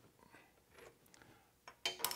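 A lathe chuck key working the chuck to free the workpiece: faint metallic ticks, then two sharper metal clicks near the end, the last one ringing briefly.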